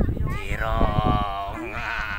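A long, wavering bleat-like call, starting about half a second in and trembling in pitch near the end.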